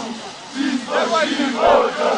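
Football supporters in the stands chanting and shouting together, a crowd of mostly male voices. The chant dips briefly near the start and swells louder from about a second in.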